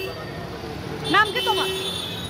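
A woman's voice with a short, high-pitched utterance about a second in, over a steady low hum of street traffic.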